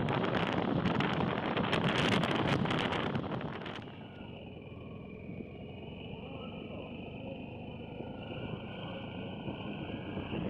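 Wind buffeting the microphone over the rumble of a vehicle moving along a road, with frequent crackles. About four seconds in it drops abruptly to a much quieter, thinner sound.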